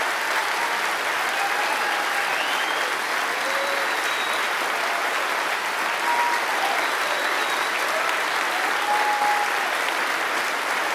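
Audience applauding steadily in a hall after a political applause line.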